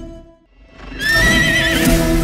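The music fades almost to silence, then about a second in a horse whinnies once, a wavering high call lasting under a second, over a swelling sustained music chord.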